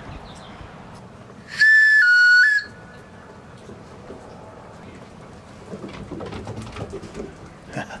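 A handmade turned lacewood two-tone wooden whistle blown once for about a second, starting about one and a half seconds in. It sounds a clear high note, then steps down to a slightly lower one. It is blown as a recall call for a dog.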